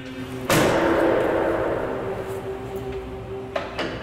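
A heavy prison cell door slams shut about half a second in, with a loud impact that rings and reverberates away over a couple of seconds. Two short metallic clicks follow near the end.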